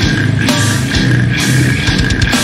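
Slamming brutal death metal: loud, dense distorted electric guitars with drums, playing without a break.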